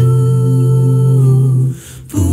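An a cappella vocal group holds a sustained close-harmony chord, mostly hummed. The chord breaks off near the end.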